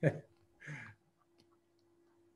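A man's voice briefly at the start and again for a moment just under a second in, then a pause of near silence on the call line with a faint steady hum and one small click.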